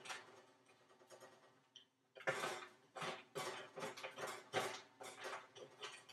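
Spatula scraping and tossing dry snack mix of pretzels, cereal squares and crackers on a metal baking sheet: a series of irregular scrapes and rattles, starting about two seconds in.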